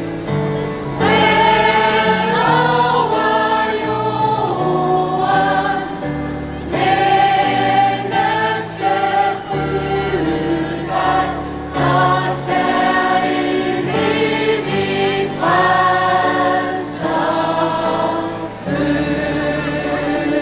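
A gospel choir singing a hymn in harmony with keyboard accompaniment, in phrases of held notes with short breaks between them.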